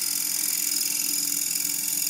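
Wood lathe running while a hand-held turning tool cuts the spinning Manchurian pear wood: a steady hiss of the cut over the even hum of the lathe.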